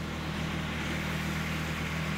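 Steady low machine hum of several tones with an even hiss over it, holding constant, from the running equipment of an engine dyno cell.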